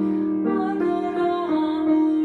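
Choral music with piano: a rehearsal recording of a choral piece, held notes moving to a new pitch about every half-second.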